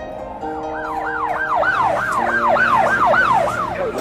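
A siren yelping rapidly up and down, about three sweeps a second, then dropping in pitch as it winds down near the end. It sounds over held synth chords of the song's backing music.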